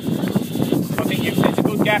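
Indistinct voices aboard a racing sailing yacht, over steady wind on the microphone and the rush of water along the hull.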